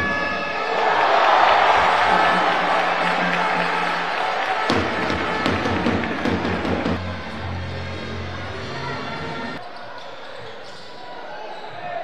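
Basketball game sound in an indoor arena: crowd noise and voices with the ball bouncing on the court, loudest in the first couple of seconds and dropping away about ten seconds in.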